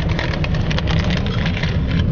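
Steady low running noise of a car's engine and tyres heard inside the cabin, with the crinkling of plastic snack packets being handled.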